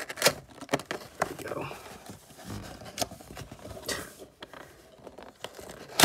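Fingers picking and prying at the tough perforated tab of a cardboard trading-card box, with scratchy rubbing and tearing of the cardboard and several sharp clicks.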